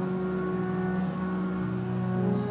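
Organ playing sustained chords, with a change of chord near the end.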